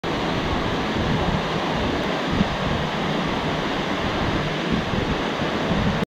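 Steady rushing of a waterfall about five metres high pouring into its plunge pool.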